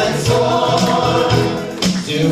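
Christian worship song: a group of voices singing together over instrumental backing, with low bass notes and occasional percussion hits.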